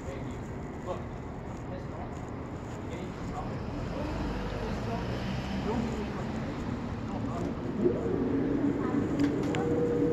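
Distant, indistinct voices talking over steady street and traffic noise, growing somewhat louder toward the end.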